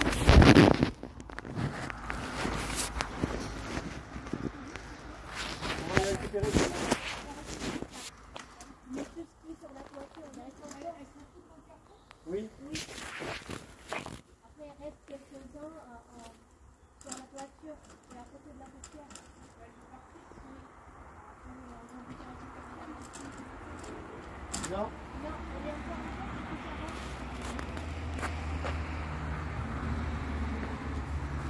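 Scattered knocks and handling noises, the loudest right at the start, with low indistinct voices; a low rumble builds in the last few seconds.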